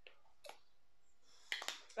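Faint handling of a plastic squeeze sauce bottle: a single click of its cap about half a second in, then a short cluster of clicks and rustle near the end.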